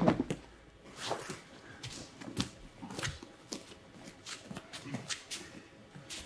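Faint rustling of heavy judo gi cloth with scattered soft scuffs and taps of bodies and bare feet on the judo mat, as two judoka get up from the mat after a throw.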